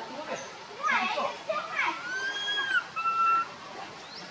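Baby macaque crying: a run of short rising-and-falling squeals, then a long high arched coo about halfway through and a shorter steady one near the end. These are the distress calls of an infant missing its mother.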